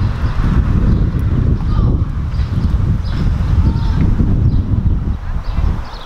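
Wind buffeting the camera's microphone outdoors: a loud, uneven low rumble that drops away near the end.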